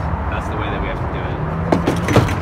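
Two sharp knocks near the end as BMX bikes stacked in a van's cargo area are handled, over a steady low rumble and faint voices.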